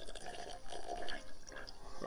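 Faint sipping and gulping of water from a glass: soft, irregular liquid sounds.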